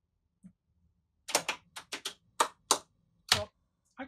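Guard-locking safety switches clicking one after another as their locks switch: about nine sharp clicks over two seconds, staggered by the built-in delay from tap to tap that prevents a current surge when all the switches are commanded at once.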